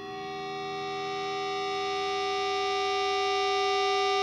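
Opening of a hardcore punk recording: one held note, steady in pitch and rich in overtones, swelling in gradually and growing louder throughout.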